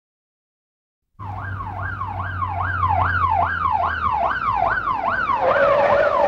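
Police car siren on a fast yelp, rising and falling about two and a half times a second, starting suddenly about a second in over a low steady hum. Near the end a steady held tone joins it.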